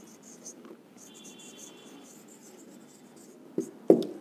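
Dry-erase marker writing on a whiteboard: a run of short, faint scratchy strokes as a word is written out, with a thin high squeak from the marker tip for about a second, starting about a second in.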